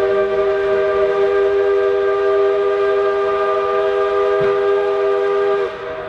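Approaching locomotive sounding its horn in one long, steady multi-note chord, which drops off near the end, leaving a fainter tone.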